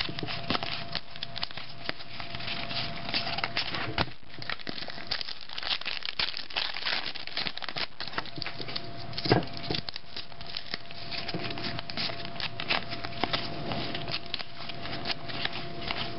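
Trading-card pack wrapper crinkling and tearing open, with cards rustling and clicking against each other as they are handled and sorted, in a run of many small clicks.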